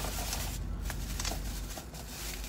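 Light rustling and a few small clicks from something being handled in the lap, over a steady low hum.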